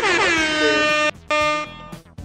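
A game-show horn sound effect signalling that time is up: a long blast that drops in pitch and then holds, cut off and followed by a short second blast at the same pitch.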